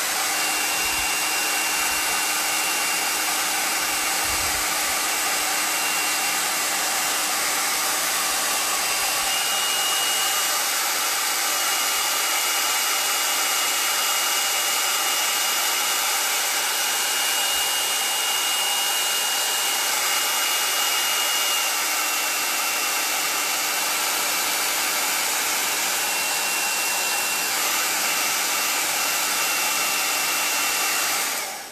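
Handheld hair dryer running steadily, a continuous rush of air with a faint high whine over it.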